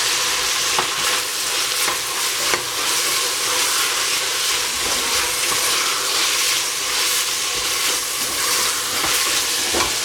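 Strips of carrot and capsicum sizzling steadily as they fry in a stainless steel pot, stirred with a wooden spoon that knocks lightly against the pot now and then.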